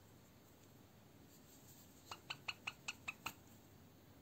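A bird chirping: a quick run of about seven short, pitched chirps, about five a second, starting about two seconds in, over faint room tone.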